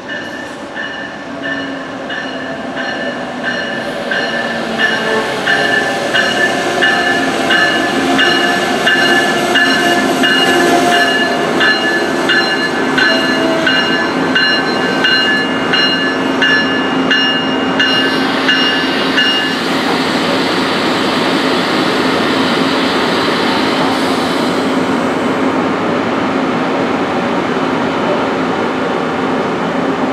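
Amtrak ACS-64 electric locomotive and its passenger cars rolling into the station, the locomotive's bell ringing in steady, evenly spaced strokes until it stops about two-thirds of the way through. Wheel and rolling noise grows louder as the train arrives, with a steady hum under the passing cars.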